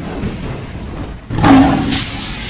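Cinematic logo-reveal sound effects: a low rumble, then a sudden loud blast just over a second in that spreads into a hissing wash as it fades.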